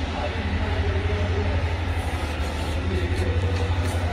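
A steady low hum with a fast, even flutter, with faint voices in the background.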